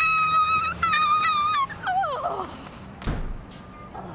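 A woman's high-pitched squeals of excitement: two long, held squeals, then a shorter falling one about two seconds in. A dull thump follows about three seconds in.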